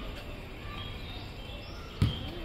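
Outdoor background noise with a few short bird chirps.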